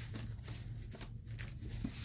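Faint handling noises of craft supplies on a cutting mat: a few light clicks and scuffs over a steady low hum.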